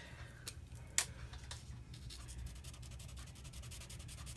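Faint scratching of a water-based felt-tip marker colouring on stamped cardstock, in quick short strokes during the second half, after a single click about a second in.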